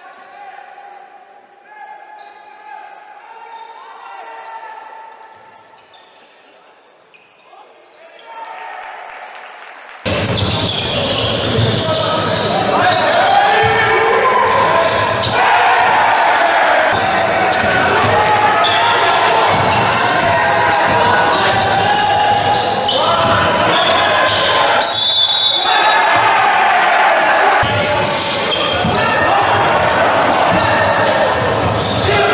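Live basketball game sound in a gym: a ball bouncing on the floor amid players' and spectators' voices, echoing in the hall. The first ten seconds are fainter; then the sound turns abruptly louder and denser.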